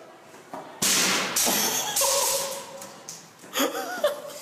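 A soccer ball kicked hard in a hallway: a sudden loud bang about a second in, followed by a short yell and voices.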